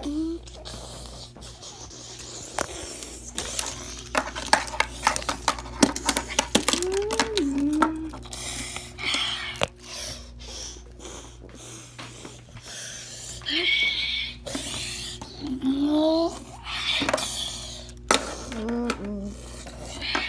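A child's voice humming and making short sliding vocal sounds, with a quick run of clicks and knocks from handling about four to eight seconds in.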